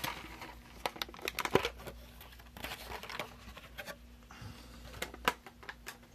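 Rustling and crinkling with scattered small clicks and taps, the sound of electronic components and their packaging being handled on a workbench, over a faint steady low hum.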